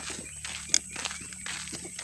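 Footsteps on a dirt road at a walking pace, irregular scuffs and taps, with one sharp click a little under a second in.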